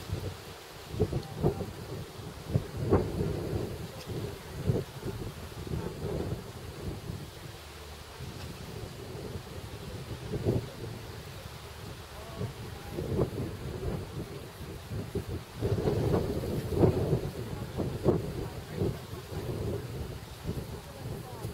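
Wind buffeting the camera's microphone: a low rumble that comes in uneven gusts, with the strongest run of gusts near the end.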